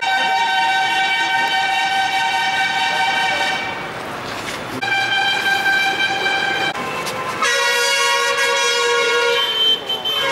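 Vehicle horns sounding in long held blasts: one steady tone for nearly four seconds, a shorter one about five seconds in, then a lower, two-note blast over the last couple of seconds.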